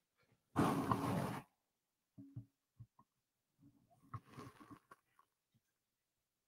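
A man's short, loud breathy grunt lasting about a second, followed by faint scattered knocks and clicks as a webcam is handled and repositioned.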